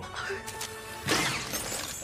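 Animated-series soundtrack: music with a crash sound effect that comes in loud about a second in.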